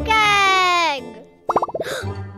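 A baby cartoon character's long, slowly falling 'ooh', then a quick run of short cartoon popping sound effects about one and a half seconds in, over light children's background music.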